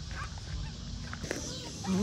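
Wind rumbling on the phone's microphone, with a few faint honks from a flock of Canada geese.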